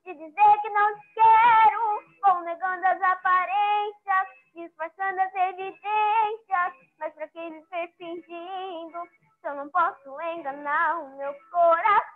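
A boy singing solo and unaccompanied, a series of sung phrases broken by short breaths, heard through a video-call connection.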